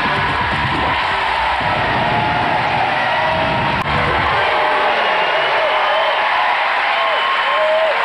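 Television show's theme music over a studio audience cheering and applauding; the music stops about four seconds in, leaving the applause and cheering.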